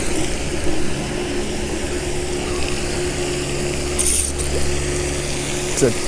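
Spinning reel cranked steadily, its gears whirring close by, as a hooked peacock bass is reeled in.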